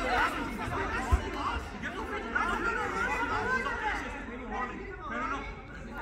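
Several voices chattering and calling at once, not clearly words, with a single short low thump about a second in.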